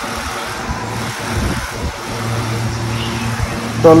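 Blanket rustling and a phone being handled close to its microphone, an uneven rubbing noise, with a low steady hum under it in the second half.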